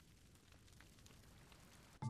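Very faint campfire crackle: a soft hiss with scattered small pops.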